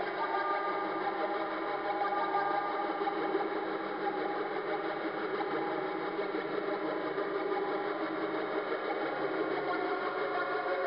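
Korg Monotron Delay analog ribbon synthesizer holding a steady, dense drone of many sustained tones that waver slightly, fed through outboard effects processors.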